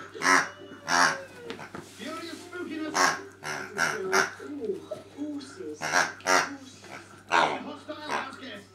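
A West Highland White Terrier chewing a rubber squeaky toy, biting down on it again and again for a string of sharp, high squeaks, about seven in all, some coming in quick pairs.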